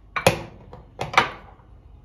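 Glass spice jars being set down on a kitchen countertop: two sharp clinks about a second apart, each ringing briefly.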